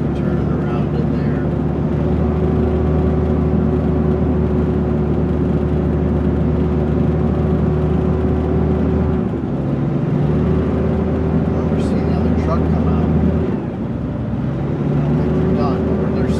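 Dump truck's diesel engine heard from inside the cab, running steadily while driving, its note breaking off briefly about nine seconds in and again near thirteen and a half seconds before picking back up.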